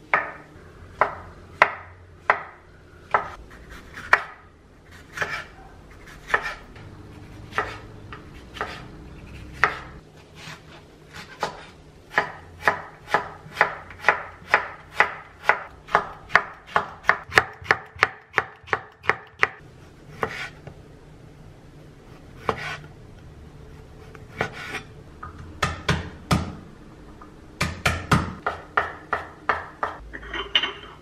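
Chef's knife chopping mushrooms and green chilli on a wooden cutting board. The knocks come irregularly at first, then in a quick even run of about four cuts a second, then scattered again.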